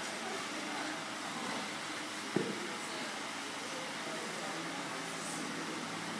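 Steady room noise in a large open space, broken once about two and a half seconds in by a single short, sharp knock.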